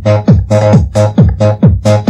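Fast electronic dance music from a 1990s makina DJ session. A kick drum drops in pitch on every beat, about four a second, with a buzzy synth chord and hi-hats filling between the beats.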